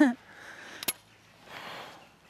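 A woman's brief laugh, then about a second in a single sharp click as a shotgun is broken open after firing.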